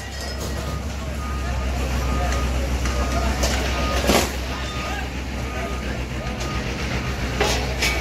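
A front loader's engine running steadily, with a faint repeated beep and one brief clatter about four seconds in as it tears down a shop-front structure.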